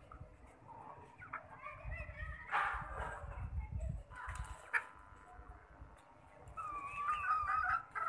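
Young aseel chickens calling and clucking, with a longer wavering call near the end.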